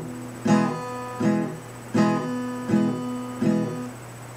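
Steel-string acoustic guitar, a Yamaha FGX-412C, strummed on an E major chord: five strokes in an uneven rhythm. Between and after strokes the chord is choked by lifting the fretting fingers just enough to stop the strings, giving a clipped, bouncing feel.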